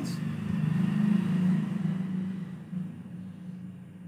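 A low rumble that is loudest about a second in and then fades away.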